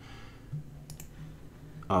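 Two quick computer mouse clicks about a second in, over a faint low steady hum.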